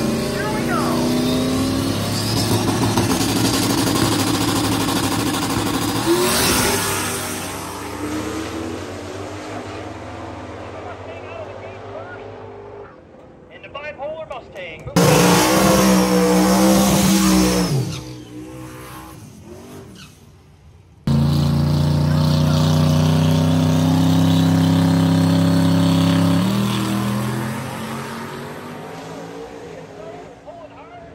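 Drag race car engines held at a steady high rev, in several abruptly cut segments. Near the end the engine note shifts and fades as the cars pull away down the strip.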